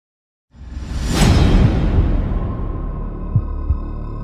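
Logo intro sound effect: a whoosh that rises about half a second in and peaks near one second over a deep rumble, then settles into a held drone with two short low thuds near the end.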